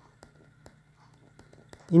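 Stylus writing on a tablet screen: a few faint, scattered ticks over a low background hum.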